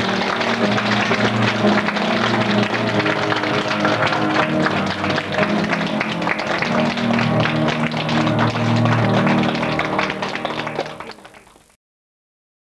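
Piano playing sustained chords with many hands clapping over it, fading out near the end.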